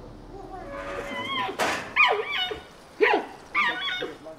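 Giant panda giving a series of short, high bleating calls that rise and fall in pitch, beginning about a second and a half in. Bleating of this kind is a panda's breeding-season call.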